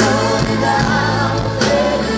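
Live band music with singing, over a steady drum beat; the bass line changes about one and a half seconds in.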